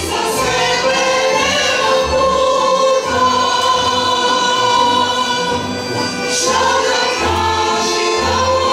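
Women's choir singing long held notes, with a brief break about six seconds in before the next phrase begins.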